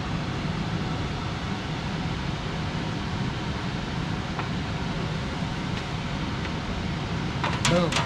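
Pedal-controlled Baileigh bead roller running steadily with a low hum, slowly feeding a 16-gauge aluminum panel through its dies to roll a joggle step around a corner.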